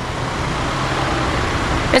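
Steady street traffic noise with a car engine running, an even rushing sound over a low hum.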